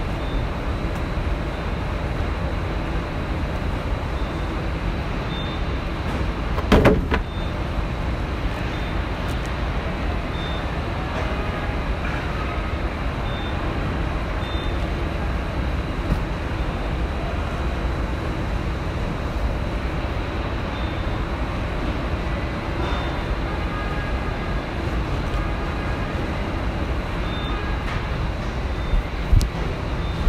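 Steady rumble and hum of factory machinery, with a sharp loud clatter about seven seconds in.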